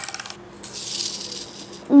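Small plastic toy car from a Kinder Joy egg run across a wooden tabletop: a quick burst of rattling clicks, then a high whirring hiss for about a second as the wheels roll.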